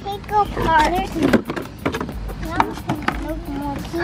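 Voices talking indistinctly, with crackling and clicking of a clear plastic packaging insert being handled.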